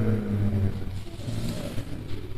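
A man's drawn-out, level hesitation sound ('ehh') trailing off under a second in, then a short pause before he speaks again.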